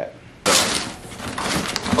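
Cardboard box being torn open: a sudden loud rip about half a second in, trailing off into rustling and crackling of cardboard and packing.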